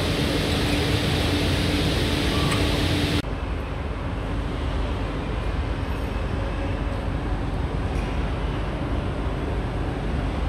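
Bench drill press running with a steady motor hum and hiss as it bores into wooden board. About three seconds in the sound cuts abruptly to a duller, steady low rumble of a large hall.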